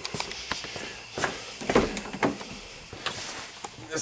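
Footsteps and handling noises of a person walking up to a car and climbing into the driver's seat: scattered light knocks and rustles.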